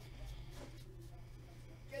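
Quiet room tone with a steady low hum, a faint murmur about half a second in, and a spoken word starting at the very end.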